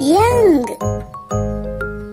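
Bright, jingly children's background music with a steady bass pulse. A voice calls out one drawn-out word, rising then falling in pitch, in the first second.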